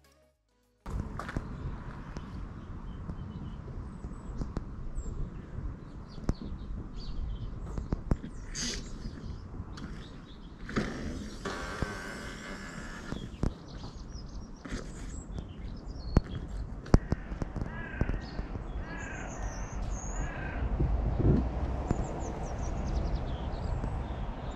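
Outdoor ambience with crows cawing several times in the second half and small birds chirping, over a steady low rumble.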